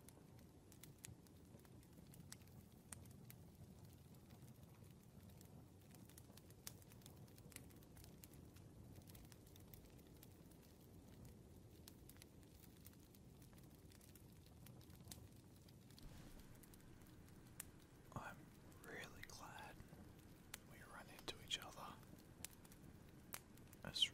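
Faint rain and fireplace ambience: a quiet steady hiss with scattered small crackles. Near the end a soft whispering voice comes in.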